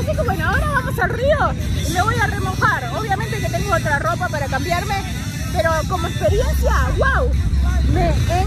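A woman talking close to the microphone, over a steady low rumble that grows louder about six seconds in.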